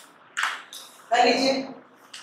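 A man's voice saying a short word or two with pauses between, preceded by a brief hiss.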